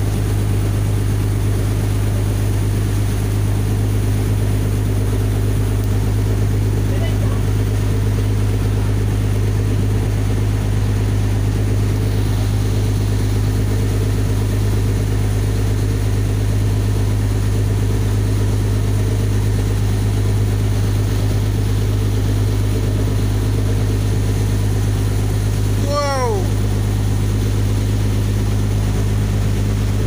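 Boat engine running steadily: a constant low drone with a few steady hum tones above it. About four seconds before the end, a brief pitched call that curves in pitch sounds over it.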